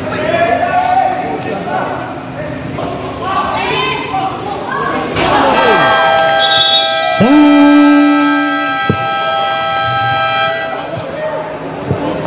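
End-of-quarter game buzzer at a basketball court, sounding as a steady electronic tone for about five seconds. A lower horn blast joins it for about a second and a half near the middle and is the loudest part. Crowd voices and shouting come before it.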